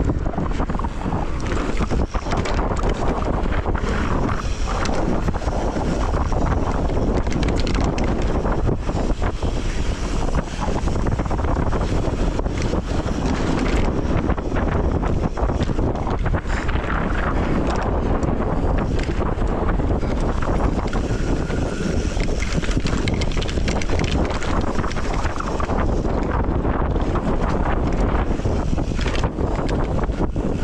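Heavy wind noise on a GoPro microphone during a fast mountain-bike descent on a dirt trail, mixed with tyre roar and frequent small clatters and knocks from the bike over the rough ground.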